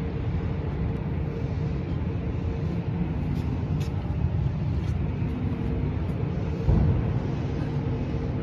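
A steady low rumble of a running engine, with a constant hum over it. A single thump comes about two-thirds of the way through.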